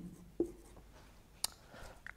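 Marker pen writing on a whiteboard, faint, with a single sharp tick about one and a half seconds in.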